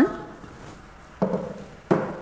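Wooden number rod knocking on the table as it is picked up and laid down: a dull knock just past a second in, then a sharper knock near the end.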